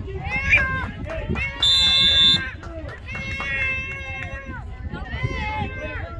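A referee's whistle blown once for just under a second, about a second and a half in, loud and shrill. Around it, girls' voices shout and call out on the field.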